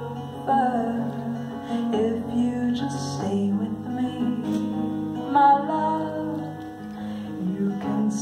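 Acoustic guitar playing a slow song, with a woman's voice singing long held notes over the chords.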